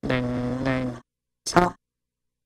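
A buzzy, voice-like pitched sound held for about a second, then a short rising yelp-like sound about half a second later.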